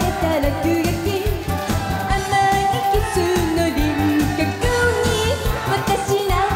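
A woman sings a Japanese pop song into a microphone over band backing with a steady beat.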